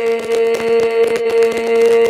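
Tày–Nùng heo phửn folk singing: one voice holds a single long note, steady in pitch, with rapid ticking underneath.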